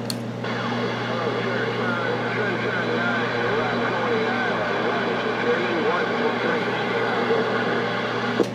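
Galaxy radio's receiver hissing with static over a steady hum, with faint, garbled distant voices wavering through the noise. There is a click at the very start as the microphone is unkeyed.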